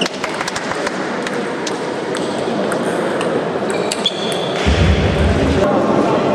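Table tennis ball clicking off bats and table, a quick run of sharp clicks in the first couple of seconds and then scattered clicks, over the chatter of voices and play at other tables in a large sports hall. A low rumble sounds near the end.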